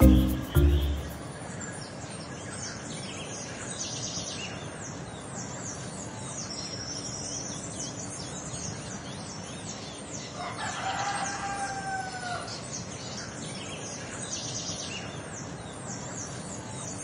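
Small birds chirping continuously, with a rooster crowing once for about two seconds a little past the middle. A music note ends in the first second.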